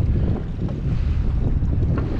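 Wind buffeting the microphone on a small open boat: a steady low rumble with no pitched note in it.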